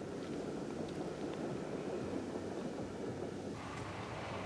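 Long freight train of car-carrier wagons rolling past, a steady rumble of wheels on rail. Shortly before the end the sound changes abruptly to a brighter, hissier noise.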